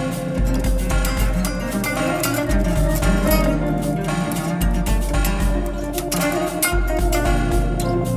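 Fender Jazzmaster electric guitar played live over a cycling Ableton Live loop of layered guitar parts, including a deep octave-down layer that gives a low end repeating in phrases about two seconds long.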